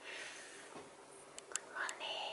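A faint whispered voice, soft and breathy, with a few small clicks near the end.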